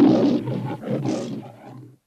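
A loud animal roar that starts suddenly, in several surges with a second swell about a second in, then cuts off.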